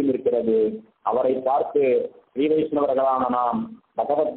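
A man speaking in a measured, lecturing voice, with brief pauses about a second in, a little after two seconds and near the end.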